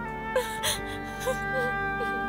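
A woman sobbing and whimpering, with two sharp catches of breath in the first second, over held chords of background music.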